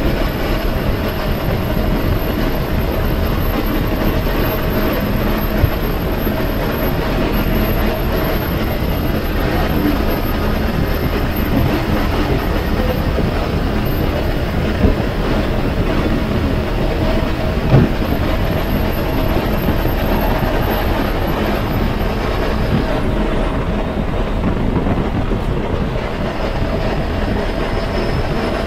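Cab noise of an Ashok Leyland tourist bus cruising on a highway: a steady drone of engine and road noise, with a couple of brief knocks partway through.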